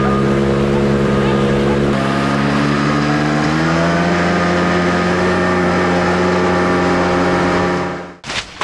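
A motor vehicle engine running steadily. Its pitch steps down slightly about two seconds in and rises a little around the four-second mark, and it cuts off abruptly at the end.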